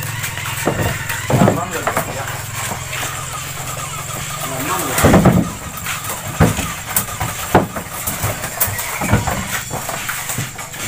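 Irregular knocks and thuds of durians and a woven bamboo basket being handled and tipped onto a wooden truck bed, loudest about five seconds in. A low steady hum runs under the first half and stops around the same point.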